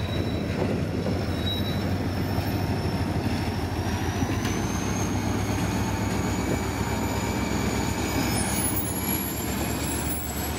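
EMD SD40-2 diesel locomotive passing at close range, its engine a steady low drone, followed by loaded log flatcars rolling by on the rails. A thin, high wheel squeal rises slowly in pitch throughout.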